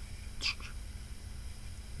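Low steady hum and hiss of a quiet room, with one brief soft hiss about half a second in.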